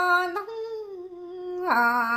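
A woman singing Hmong kwv txhiaj, a solo voice holding long, drawn-out notes: the voice sinks to a softer, hummed tone in the middle and swells again into a stronger held note near the end.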